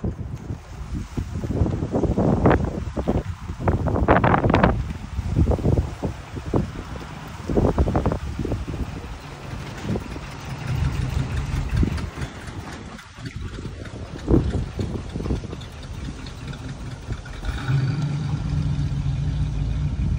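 1965 Oldsmobile Cutlass convertible's V8 running as the car drives up and passes close by. Wind buffets the microphone in gusts through the first half, and a steady low engine hum stands out midway and again near the end.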